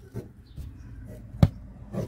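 A single sharp knock about one and a half seconds in, with a fainter click near the start, over a low rumble.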